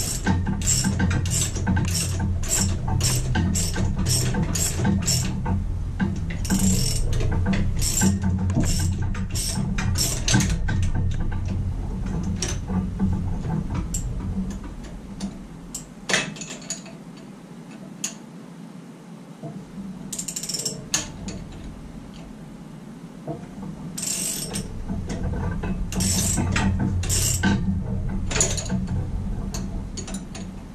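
Hand ratchet wrench clicking in repeated back-strokes, about two to three a second at first and then in scattered bursts, as the motor mount bolts are worked loose. A steady low hum runs underneath, dropping away about halfway through and returning near the end.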